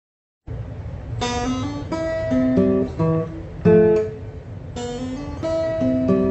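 Acoustic guitar played by hand: a melody of single plucked notes and small chords begins about a second in, with a couple of louder strokes.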